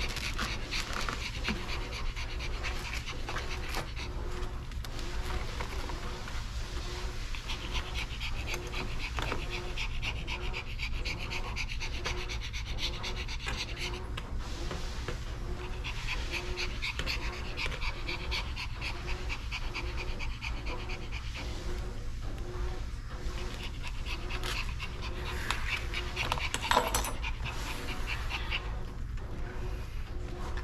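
A Pomeranian panting steadily and rhythmically, a little under two breaths a second, over a low background hum.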